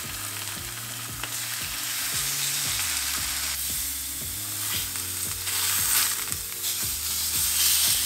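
Chicken breasts sizzling in rice bran oil in a stainless steel frying pan on high heat, a steady hiss with a few light clicks of metal tongs against the pan.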